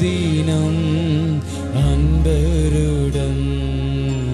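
Worship music: an electronic keyboard holds long, sustained low chords, changing chord about two seconds in, while a single voice sings a slow, wavering melody over them.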